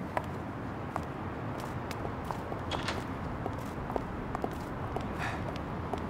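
Footsteps on pavement, a scattered series of light clicks, over a steady outdoor background hum.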